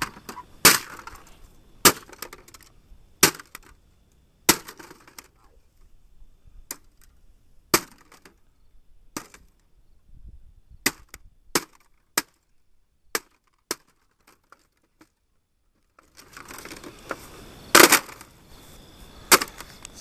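A wooden club with a heavy bolt through its head smashing a plastic printer: about a dozen sharp blows with plastic cracking and breaking. The blows come about once a second at first, then more spread out, with a short silent gap after the middle and two hard hits near the end.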